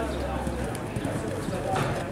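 Show-jumping horse's hoofbeats on grass as it canters up to a fence, with voices talking in the background.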